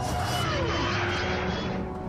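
Cartoon engine sound of a giant-tyred, exhaust-stacked motorised skateboard running steadily with a low rumble. A brief falling tone sounds about half a second in.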